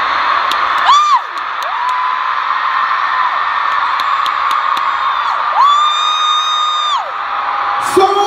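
Arena crowd of fans screaming continuously, with one voice close by holding long, high screams: a short one about a second in, then two longer ones.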